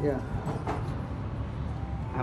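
A steady low rumble of background noise, with brief snatches of a man's voice right at the start and about half a second in.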